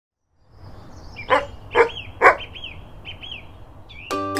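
A dog barks three times, about half a second apart, over chirping birdsong and a faint outdoor background that fades in at the start.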